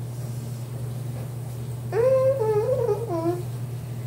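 A steady low hum, with one high wordless vocal sound about two seconds in, lasting about a second and a half: it rises, wavers and then falls away.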